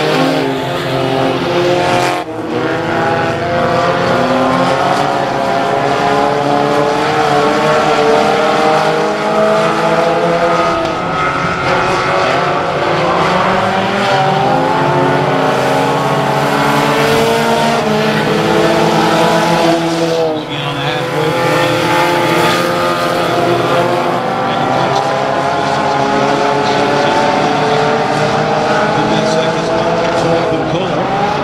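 Several four-cylinder tuner-class race cars running laps on a dirt oval. Their engines overlap, rising and falling in pitch as the cars accelerate and lift. The sound dips briefly about two seconds in and again about twenty seconds in.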